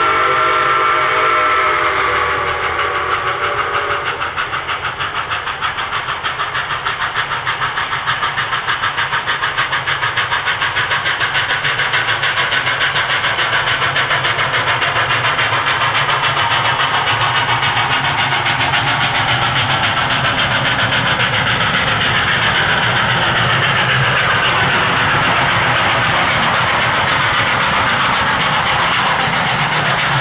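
Ex-Canadian National 0-6-0 steam locomotive #7470 sounding its steam whistle, which ends within the first few seconds. The locomotive then works steam toward the listener with a rapid, even exhaust beat that carries on to the end.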